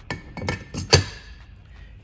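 Metal VGT stator ring clinking and knocking as it is seated into a turbo's exhaust housing: a few sharp clicks in the first second, the loudest just before the second ends, with a brief metallic ring.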